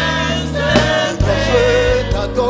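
A gospel choir singing in harmony with a live band, steady bass notes under the voices and a few drum hits.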